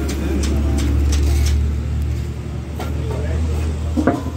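A steady low engine drone, like a motor vehicle idling close by, under background voices and a few light clicks.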